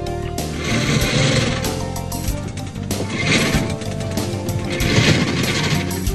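Background music with steady sustained tones, overlaid by three bursts of fast mechanical rattling, a machinery sound effect, about one, three and five seconds in.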